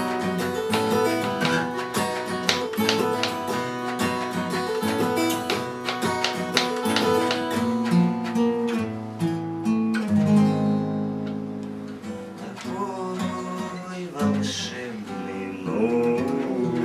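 Two acoustic guitars playing together, with dense strummed chords. About ten seconds in, the strumming thins out into quieter, held notes.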